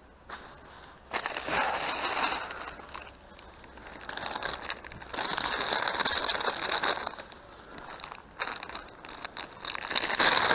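Plastic film and a plastic rubbish bag crinkling and crackling as litter is gathered up in gloved hands and stuffed into the bag, in several bursts, the longest lasting a few seconds.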